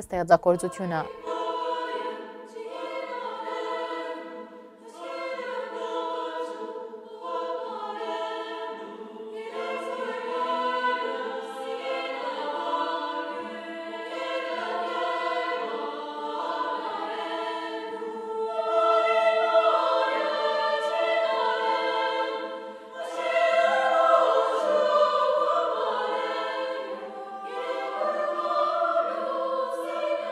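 Women's choir singing in harmony, long held notes that swell and fade in loudness.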